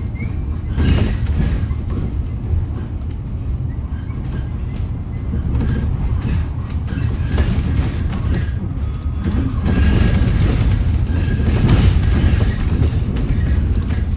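Cabin noise inside a moving battery-electric Alexander Dennis Enviro400EV double-decker bus: a steady low road rumble with knocks and rattles from the body. Louder bumps come about a second in and again towards the end.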